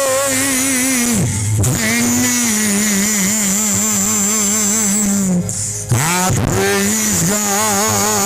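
A man's voice singing long, drawn-out notes with a strong wavering vibrato into a handheld microphone, with short breaks between the held notes.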